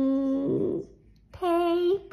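A Boston Terrier "singing": long, drawn-out howls. One held note slides down in pitch and breaks into a short rough grumble. After a brief pause, a new steady note starts near the end.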